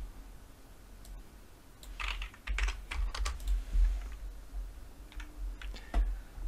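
Computer keyboard keys being pressed: a quick run of clicks from about two to three and a half seconds in, and a few more near the end.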